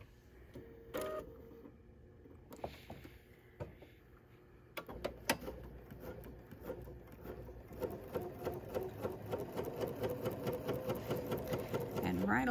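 Bernina B 880 Plus sewing machine stitching a quarter-inch seam through pieced quilt patchwork. It starts about five seconds in after a few light clicks, then runs on in a quick, even stitch rhythm that grows louder toward the end.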